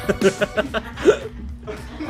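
A man laughing in short, choppy bursts.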